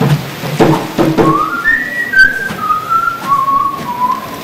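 A person whistling a short tune, one clear note line that rises and then steps down note by note, starting about a second in. It is preceded by a few short knocks.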